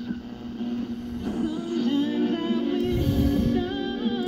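1948 Westinghouse H104 tube table radio being tuned by hand on the AM dial: after about a second a station comes in, playing music with a singer through the radio's loudspeaker.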